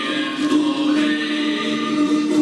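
A group of voices singing together, holding a steady note.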